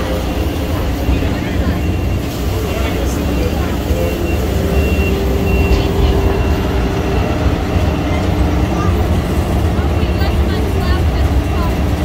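Miniature zoo train running along its track, heard from an open passenger car as a steady low rumble.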